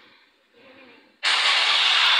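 A TV news segment's opening sound effect. After about a second of near silence, a loud, steady, hissing rush of noise starts suddenly.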